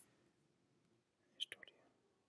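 Near silence: room tone, with a brief faint cluster of soft clicks or mouth noise about one and a half seconds in.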